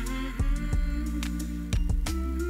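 Background music led by a guitar over a steady low bass line.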